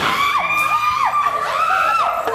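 Women shrieking in fright, long high-pitched screams held and broken off several times.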